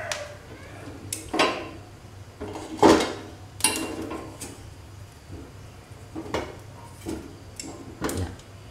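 Metal kitchen tongs clinking against the gas burner's grate and each other as they grip and turn a ginger root over the flame to char it. There are about eight short sharp clinks, the loudest about three seconds in.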